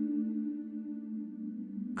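Soft background music of steady sustained tones, a held drone-like chord that eases down slightly near the end.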